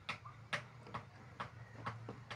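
Key and key ring clicking against a small metal padlock on a door bolt as the key is worked in the lock: faint, sharp metallic clicks, about one every half second.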